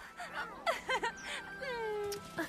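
Short high-pitched cartoon cries and squeals in quick succession, ending in a longer cry that falls in pitch, over faint background music.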